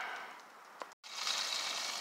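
Spanish rice sizzling in a skillet over hot coals, a steady hiss that starts abruptly about halfway through after a brief cut. Before it there is only faint background noise and a small click.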